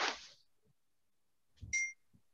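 A short electronic beep near the end: a steady high tone with a fainter, higher tone above it, over a low thump. Just before, at the very start, a brief burst of hiss.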